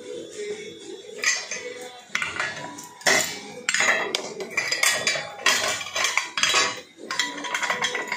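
Stainless-steel idli maker plates and stand clinking and clattering as they are handled and separated. Several sharp metallic clanks ring briefly after each knock.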